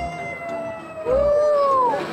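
People howling in long, high held calls, two voices overlapping, each sliding down in pitch as it ends.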